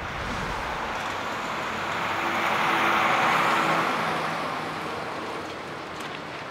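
A car passing by on a street, its tyre and engine noise growing, loudest about three seconds in, then fading away.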